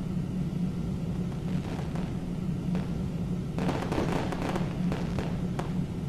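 A steady low background rumble with scattered faint crackles and clicks, which come thickest between about three and a half and five and a half seconds in.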